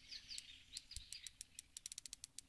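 Faint outdoor birdsong: small birds chirping, with a faint, rapid, irregular high ticking throughout.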